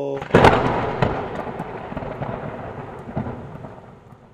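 Thunderclap sound effect: a sharp crack about half a second in, then a rolling rumble with a few smaller cracks that fades away toward the end.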